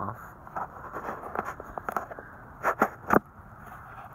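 Handling noise as a focus lens is taken off a weapon-mounted infrared light: a run of small clicks and scrapes, with the loudest knocks near the end.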